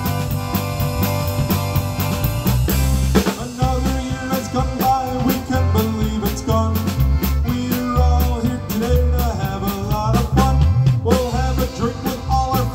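Live polka band playing: accordion lead over electric guitars and a drum kit, with a steady beat.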